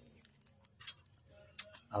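A few faint, scattered light clicks from fingers handling a small plastic-wrapped part over a set-top box circuit board.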